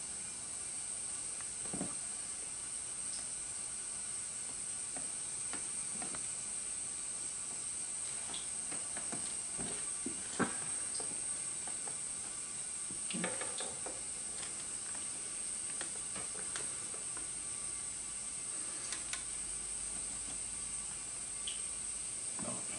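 A steady high hiss with scattered light clicks and taps from metal feeding tongs holding a rat against a plastic rack tub and its bedding; the clearest knocks come about two, ten and thirteen seconds in.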